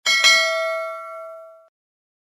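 Notification-bell sound effect from a subscribe-button animation: a bright bell ding, struck twice in quick succession, ringing with several tones and dying away within about a second and a half.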